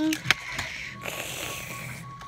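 Handling noise: a click, then a steady rustle of cloth and plastic as a toy action figure with a fabric cape is swept about by hand.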